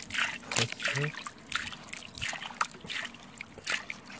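A hand scooping and sloshing through muddy water and wet sand in a dug hole on a beach, making a run of irregular wet splashes.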